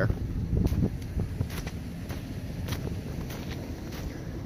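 Footsteps in snow, a soft step about every half second, over a steady low rumble of wind on the microphone.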